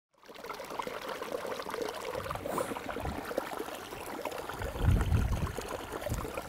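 Small stream trickling and babbling over rocks, a steady watery rush full of small splashes, with a brief low rumble about five seconds in.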